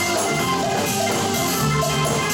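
Live band music: a Nord Electro 5 keyboard played over electric bass and drums.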